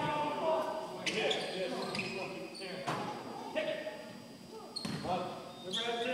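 Basketball bouncing on a hardwood gym floor: a few sharp, irregular knocks that echo around the large hall, with players' voices calling out.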